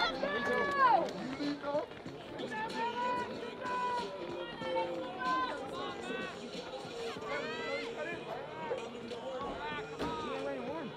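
Spectators' voices around a running track: a loud shout in the first second, then overlapping calls and chatter from several people at a distance.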